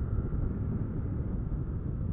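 Honda CG 150 Start motorcycle's single-cylinder four-stroke engine running steadily on the move, a low, even noise with some wind on the microphone.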